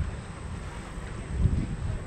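Wind buffeting the microphone of a handheld 360° camera: a low rumble that swells briefly about one and a half seconds in.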